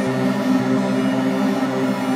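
Arturia MicroFreak hardware synthesizer playing a MIDI line sequenced from the DAW: a continuous electronic synth tone with a steady low note and its overtones held underneath.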